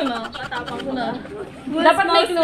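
Speech only: young women's voices chattering.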